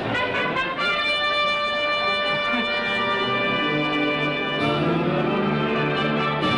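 A wind band led by brass starts to play right at the start, settling into long held chords with a change of chord near the end. This is the band's introduction to a sung number, before the singer comes in.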